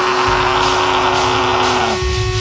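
Live black metal band's amplified, distorted guitars and bass holding one long sustained chord, with no drums.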